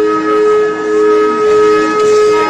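Stage accompaniment music: a loud chord of steady held notes starting suddenly, the lower note dropping out just before the end, as if cueing a scene.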